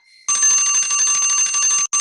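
Online countdown timer's alarm going off at zero: a loud, fast-repeating bell ring that starts about a third of a second in, with a brief break near the end, signalling that time is up.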